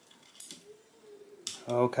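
Metal feeding tongs clicking twice, once about half a second in and again about a second and a half in, with a man starting to speak near the end.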